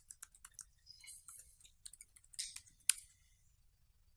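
Keyboard being typed on: a quick run of light key clicks, ending a little before three seconds in with one sharp, louder keystroke, as a login is entered and submitted.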